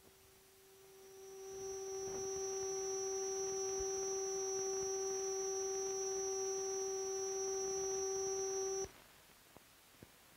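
A single steady pitched tone with a few overtones, fading in over about a second and a half, held level for about seven seconds, then cutting off suddenly; faint hiss of an old film soundtrack around it.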